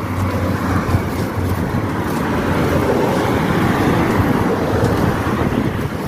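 Steady road traffic running on a highway, a little louder in the middle of the stretch.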